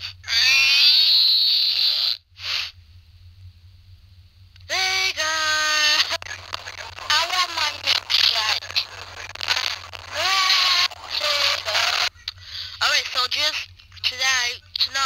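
A child's voice, high-pitched and with no clear words, recorded into a Flipnote animation and played back through a Nintendo DSi's small speaker. There is a long high call in the first two seconds, a quiet gap, then a run of short cries and syllables.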